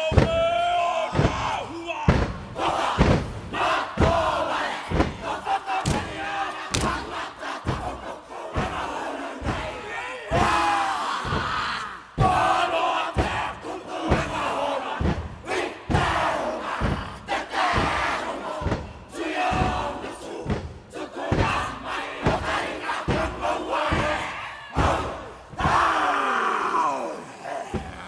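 Kapa haka group performing a haka: many voices shouting the chant in unison, over a steady beat of hand slaps on chests and thighs.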